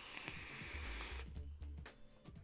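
A long draw on a vape: a steady hiss of air and vapour pulled through the atomizer for about a second, cutting off suddenly. Background music with a low beat plays underneath.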